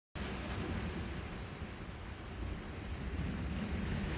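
Wind noise on the microphone, a steady low rumble, with the wash of ocean surf behind it.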